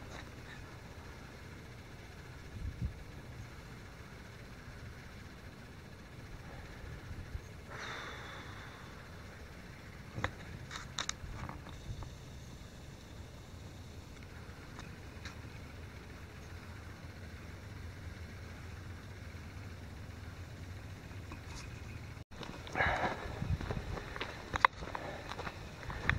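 Quiet outdoor night ambience: a faint steady low hum with a few soft clicks about ten seconds in, then rustling footsteps on the trail starting near the end.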